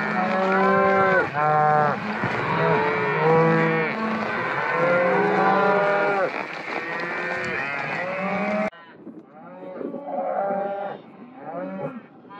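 A large herd of beef cows and calves mooing and bawling as it is driven along, many calls overlapping continuously. About two-thirds of the way through, the sound cuts abruptly to quieter, sparser mooing from cattle in a corral pen.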